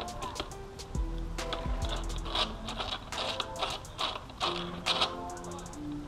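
Music playing, with held melody notes that change pitch every half second or so over a steady ticking beat.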